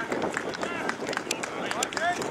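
Indistinct shouted calls of footballers on the ground, with a few sharp clicks in the second half.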